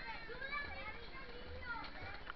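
Children playing in a swimming pool: overlapping voices, shouts and chatter, with a splash of water near the end.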